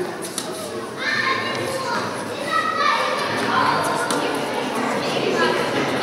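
Children's voices and chatter in a large indoor hall, with a few light knocks from tennis balls.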